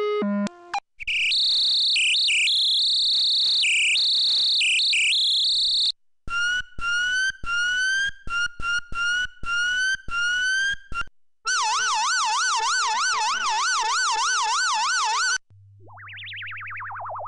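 Radio Active Atomic Effects Synth, a software synthesizer, playing siren-like effect presets one after another. First two high tones alternate back and forth for about five seconds. Then the FX-Police preset gives a quick run of short rising chirps, and near the end comes a fast wobbling wail.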